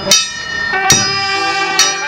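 Brass band playing: trumpets and other brass hold sustained notes over a bass drum struck three times, a little under a second apart.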